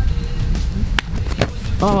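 A climber dropping off a boulder onto a foam crash pad: a sharp impact about a second in, and a second just after.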